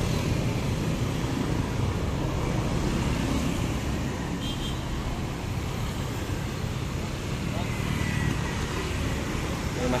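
Steady low rumble of road traffic at a roadside.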